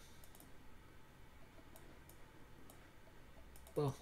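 A handful of faint, scattered clicks from computer controls while an on-screen map is dragged and scrolled.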